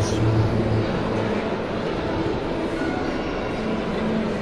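Steady murmur of a crowd in a large indoor hall: a dense blend of distant voices and background hum, with a faint low tone in about the first second.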